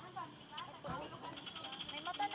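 Goat bleating, with a drawn-out call near the end, over voices talking.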